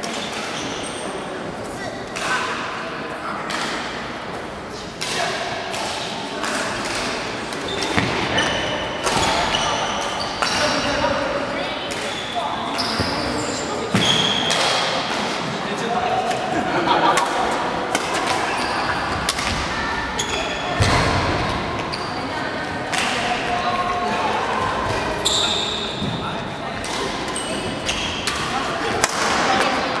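Badminton being played in a large echoing sports hall: repeated sharp racket strikes on a shuttlecock and short squeaks of shoes on the court mat, over steady background chatter.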